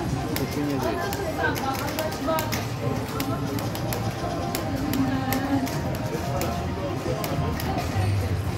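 EGT '40 Treasures' video slot machine playing its electronic bonus music and chimes, with a steady run of short clicks, over background casino chatter.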